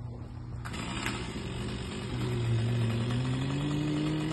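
An engine comes in sharply under a second in and keeps running, its pitch climbing slowly and steadily over the next few seconds.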